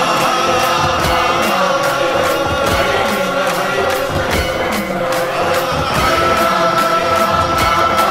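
Hindu devotional chant sung by a group over music, with a steady beat of strikes at about two to three a second and held tones underneath.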